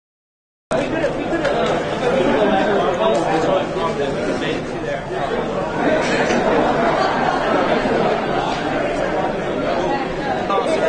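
Chatter of many people talking at once in a large hall, starting abruptly just under a second in after silence.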